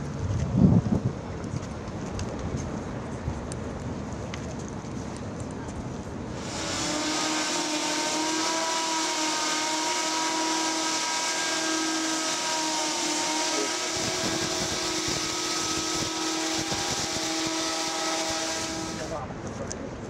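XTURISMO hoverbike's propellers running in a hover: a steady whine of several tones over a broad rushing hiss. It starts abruptly about six seconds in and cuts off abruptly near the end, with a quieter background before it.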